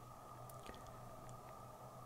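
Near silence in still air: only a faint steady low hum and hiss, with a few barely audible ticks.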